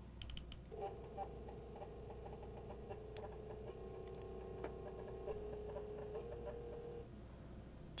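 Apple 3.5-inch floppy drive reading a disk: a faint, steady motor whine that steps up and down in pitch a few times as the drive changes speed between track zones, with a few light clicks.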